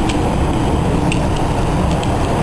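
Garden hose running, water spraying and splashing in a steady rush, with a few faint clicks.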